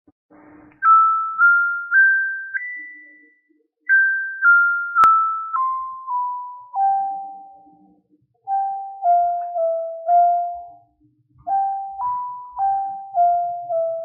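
Intro music: a slow melody of single struck notes on a bright tuned mallet instrument, about two notes a second, each ringing and fading. The phrases climb and then step back down. A single sharp click comes about five seconds in.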